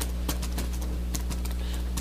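A steady low electrical hum under scattered light clicks and taps at an uneven pace, typical of papers and pens handled on a meeting table.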